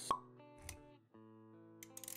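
Animated-intro sound effects over music: a sharp pop just after the start, the loudest thing here, then a dull low knock, then held musical notes sounding together.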